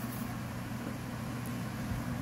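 A steady low electrical hum with a faint hiss behind it, like a small motor or fan running.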